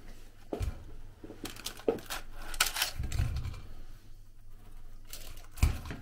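Kitchen handling sounds as cooked fritters are lifted with tongs out of a paper-lined air fryer basket onto a plate: scattered light clicks and knocks, with a few soft thumps about three seconds in.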